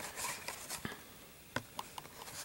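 Faint scattered clicks and light rustling of cardboard-and-plastic blister packs being handled and shuffled, with a few sharper ticks a little past halfway.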